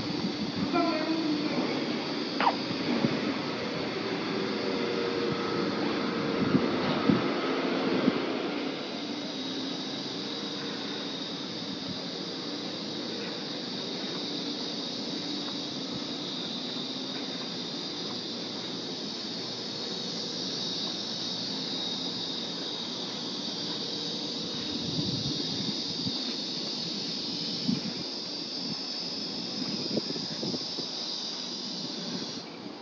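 Outdoor street ambience with a steady high-pitched hiss throughout. During the first eight seconds a louder, lower hum and a few knocks sit over it.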